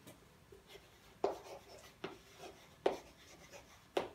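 Chalk writing on a chalkboard: quiet scratching with a few sharp taps about a second apart as the chalk strikes the board.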